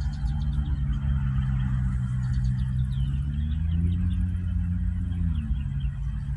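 Diesel locomotive engine running with a steady low drone, its pitch rising about three and a half seconds in and falling back shortly before the end as the throttle changes.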